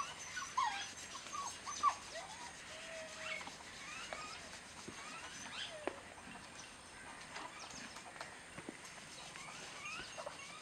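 Scattered short, high-pitched animal chirps and squeaks, several close together in the first two seconds and sparser after, over a steady outdoor background.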